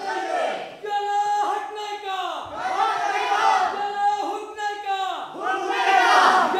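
A group of performers' voices calling out together in a string of loud, drawn-out shouts, each held for about a second.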